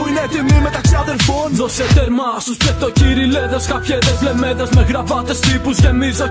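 Greek-language hip hop track: rapping over a beat of deep kick drums that fall in pitch, with bass underneath. The kick and bass drop out for about half a second around two seconds in, then the beat comes back.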